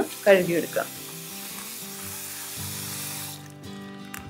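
Kitchen tap water running into a steel bowl of ivy gourds in a stainless steel sink, a steady hiss that cuts off near the end.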